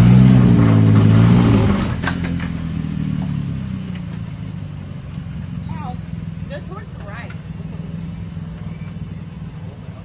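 Off-road Jeep's engine revving hard as the rig climbs over logs and rocks, the revs rising for about the first two seconds, then dropping back to steady low-throttle running as it crawls on.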